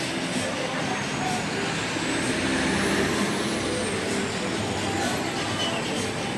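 Road traffic: a motor vehicle passing close by, its noise swelling to a peak about halfway through and then fading, with a faint high whine rising and falling in pitch as it goes.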